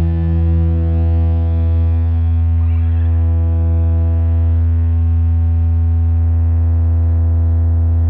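Distorted electric guitar and amplifier drone held on one chord, steady and loud with a heavy low hum: the sustained closing chord of a rock song ringing out.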